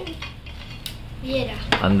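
Stainless steel water bottle's screw cap being twisted off, with a few short metallic clicks.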